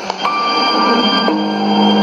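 Music of long held notes coming through a shortwave AM broadcast on a Sony receiver; the chord changes about a second in, over a steady low tone.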